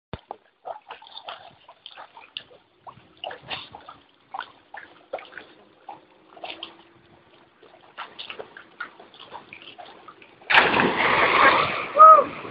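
A bicycle and its rider plunging into a river: one loud splash about ten and a half seconds in, lasting about a second and a half.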